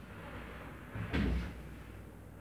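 A loose kitchen countertop knocked down onto its base cabinets as it is shifted into place: one dull thud about a second in.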